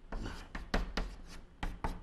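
Chalk on a blackboard: a quick string of taps and short scratches as Chinese characters are written by hand.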